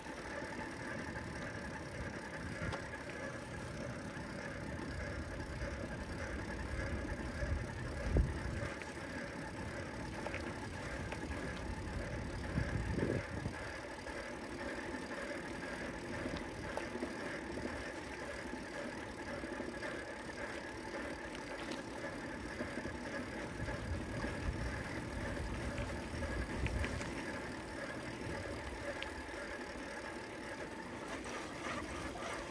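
Bicycle being ridden on a paved street: steady tyre and drivetrain noise with a low rumble, and a sharp jolt about eight seconds in and another around thirteen seconds in.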